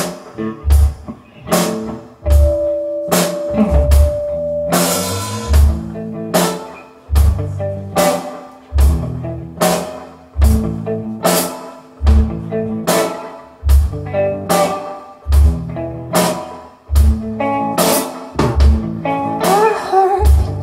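Live rock band playing an instrumental passage: a drum kit keeps a steady beat of bass drum and snare hits under an electric guitar playing held notes and chords. A cymbal crash rings out about five seconds in.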